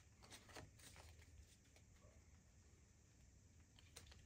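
Near silence, with a few faint clicks of playing cards being mixed by hand in about the first second, then only room tone.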